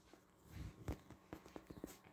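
Faint handling noise as a phone camera is moved over bedding: a brief rustle, then a few soft, short knocks and taps in the second half.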